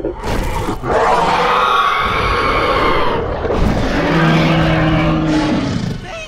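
Film dinosaur roars: a long, loud, rasping roar about a second in, then a lower, steadier roar from about four seconds in. A couple of short thuds come just before the first roar.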